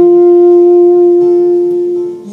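Saxophone holding one long steady note over acoustic guitar accompaniment.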